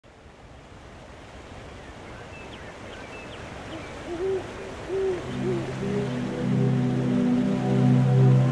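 Ambient night soundscape fading in: a steady wash of rushing water with a few faint high chirps, then three soft hoots between about four and five and a half seconds in. A soft, sustained music pad comes in about five seconds in and grows louder.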